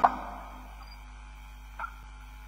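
A quiet pause on a broadcast audio line: a low steady hum, with a man's voice trailing off right at the start and one brief faint sound near the end.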